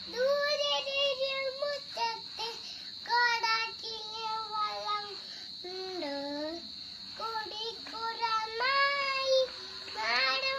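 A young boy singing a nursery song alone, unaccompanied, in held and gliding notes with short breaks between phrases. A steady high-pitched drone runs behind the voice.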